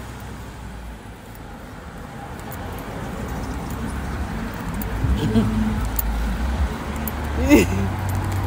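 Steady low rumble of road traffic and moving air, growing louder over the second half, with a few brief snatches of voice.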